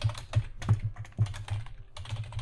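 Typing on a computer keyboard: a quick run of keystrokes.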